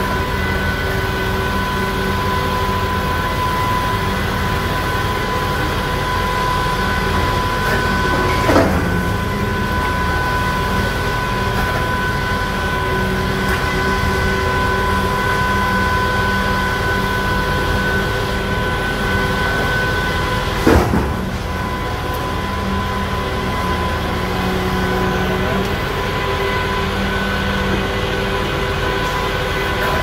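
A long-reach demolition excavator running steadily, its engine and hydraulics giving a constant hum with a high whine. Two short bangs, about eight seconds in and again about twenty-one seconds in, as the machine breaks into the structure.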